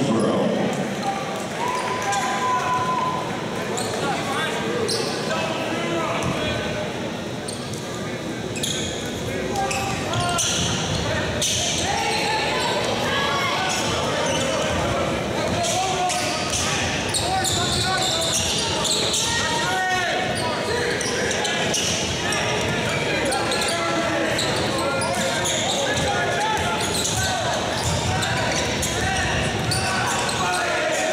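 Basketball dribbled on a hardwood court, with the bounces echoing in a large gym over continuous crowd voices.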